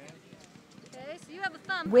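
Low background talk from people standing close by, with a few light clicks and taps.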